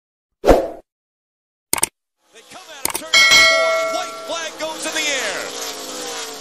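A loud thump and a few sharp clicks, then a metallic clang that rings on with a bright, bell-like tone and fades over a couple of seconds. Pitched sounds glide up and down underneath it.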